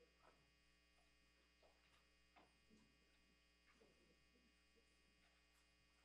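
Near silence: a faint, steady electrical hum, with a few faint, brief sounds scattered through it.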